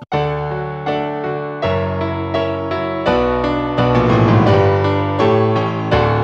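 Piano playing the introduction of a song as a chord progression, a new chord or bass note struck about every second. The left hand steps the bass between chords in a walking bass line.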